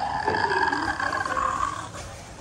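A drawn-out, roar-like cry that lasts nearly two seconds, rising slightly in pitch before it stops.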